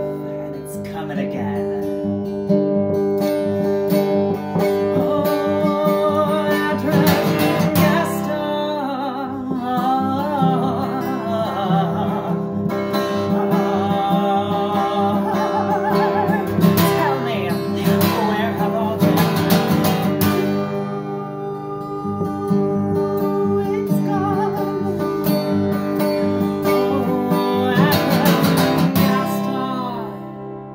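A woman singing while strumming chords on an acoustic guitar, the voice rising and falling over a steady strum.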